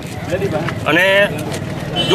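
A man speaking into a handheld microphone over a steady low rumble of background noise.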